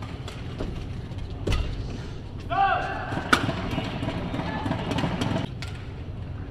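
Badminton rally: sharp racket hits on the shuttlecock, the sharpest about three seconds in, with shoe squeaks on the court just before it. Voices and crowd noise then follow for about two seconds as the point ends.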